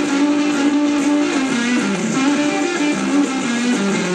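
A live blues band playing, led by an electric guitar holding notes that waver and bend down in pitch, over the rest of the band.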